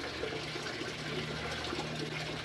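A steady, even hiss of background noise with a faint low hum under it, without any distinct event.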